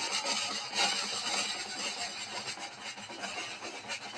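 Battle sound effect in an audio drama recording of Macbeth: a dense, rasping clatter of noise that slowly fades.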